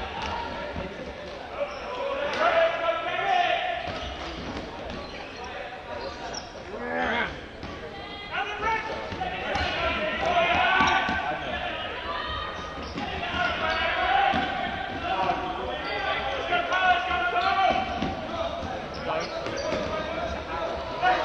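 Ultimate frisbee players shouting and calling to each other, echoing in a large sports hall, with running footsteps thudding on the wooden court.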